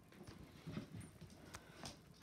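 Faint soft shuffles, small thumps and a few clicks from small puppies scrambling on a cloth blanket and nuzzling at their mother to nurse.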